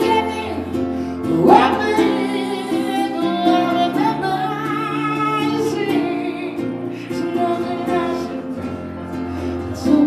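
A woman singing a slow ballad live, accompanied by a strummed ukulele and an electric piano.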